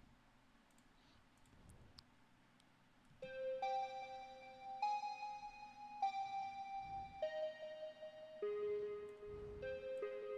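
Synthesizer line played back from a computer music project: after about three near-silent seconds with a couple of faint clicks, a run of held pitched notes starts, each lasting about a second before stepping to a new pitch.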